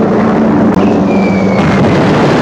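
Film soundtrack of a formation of propeller warplanes droning overhead: a loud, steady engine drone over a dense rumble. About a second in, a high whistle falls slowly in pitch for about a second, the whistle of a dropping bomb.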